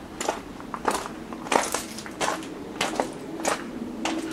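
Footsteps crunching on a gravel path at a steady walking pace: six steps, about one every two-thirds of a second.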